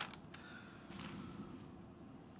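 A faint creak and a couple of small clicks over a steady low room hum.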